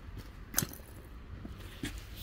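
Footsteps on a concrete slab: one sharp click about half a second in and a lighter one near the end, over a low steady rumble.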